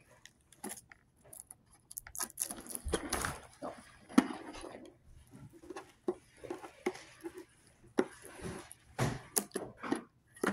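Hands handling a plastic toy box and pulling at its tape and plastic wrapping: irregular rustles, clicks and light knocks, busiest a couple of seconds in and again near the end.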